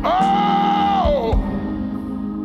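Live gospel worship music: a voice holds one long high note, then slides down about a second and a half in. Underneath are sustained keyboard chords and a few deep drum thumps.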